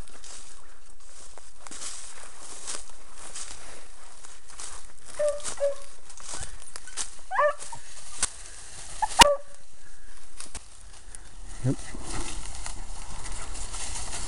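Footsteps crunching and rustling through dry grass and brush, with a few short high yelps from a beagle working the brush about five and seven seconds in, and a sharp snap near nine seconds.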